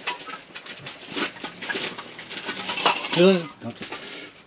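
Metal gas cartridges clinking together and their plastic shrink-wrap crinkling as one is pulled out of the pack. A short vocal sound comes about three seconds in.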